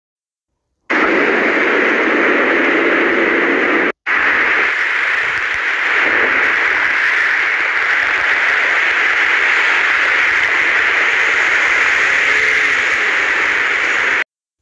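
Loud, steady radio-style static hiss, like a detuned radio, playing from a livestream's audio. It starts about a second in and cuts out for a moment about four seconds in.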